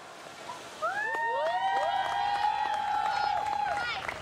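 Audience cheering with many voices whooping. The long rising shouts overlap and start about a second in.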